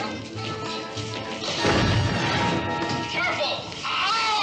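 A gas bomb going off: a sudden loud blast about a second and a half in, trailing off into a hiss over about a second, over background music.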